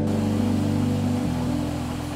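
A Samsung front-load washing machine starting its wash cycle, an even steady hiss, under low sustained background music chords.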